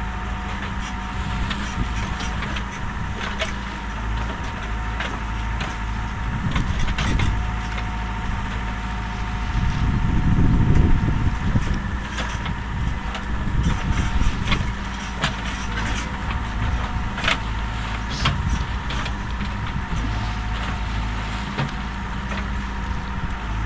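Diesel engine of a Caterpillar backhoe loader running steadily while its bucket digs into an earth bank, with scattered clicks and knocks and a louder low surge about ten seconds in.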